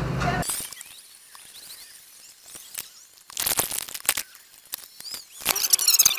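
A low steady rumble stops abruptly about half a second in. It is followed by quiet, scattered clicks, crackles and rustling, which come in two clusters in the second half: handling noise as the camera is moved.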